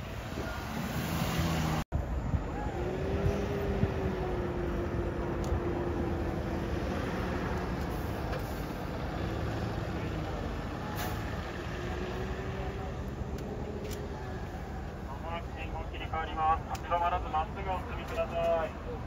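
Road traffic dominated by large diesel route buses driving through an intersection: a steady drone with an engine hum that comes in a few seconds in and again around the middle. There is a sudden break about two seconds in.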